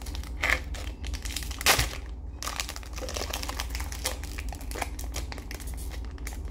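Foil Pokémon trading-card booster pack wrapper crinkling as it is handled and torn open, in irregular crackles with a louder one nearly two seconds in.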